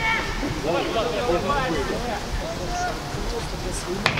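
Players' voices calling out across a football pitch: several overlapping shouts and calls, distant enough that no words come through clearly.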